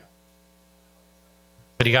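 Faint, steady electrical hum made of several even tones and nothing else.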